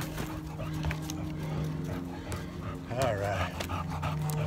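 An English bulldog breathing hard and panting as it climbs steep trail stairs, under a steady low drone. A short wavering voice-like sound comes about three seconds in.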